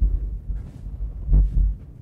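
Low thuds and rumble close to the microphone, the heaviest about a second and a half in: bumping and handling noise as presenters set up at the front table.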